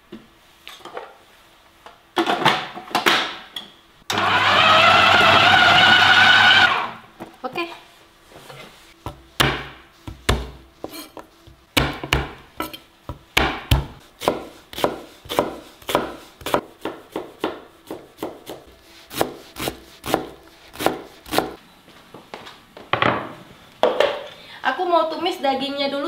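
Food processor chopping chunks of raw beef in a short burst of about two and a half seconds, its motor rising slightly in pitch as it spins up. After that, a knife chopping onion on a wooden cutting board in a long run of quick, even strokes.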